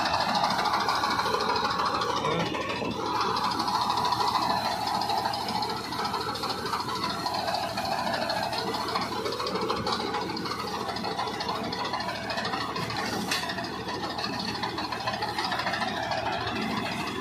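Tractor diesel engine running under load, driving a front-mounted ATA Prime wheat reaper that is cutting standing wheat: a steady mechanical din with rattling from the cutter bar, swelling and easing slightly every few seconds.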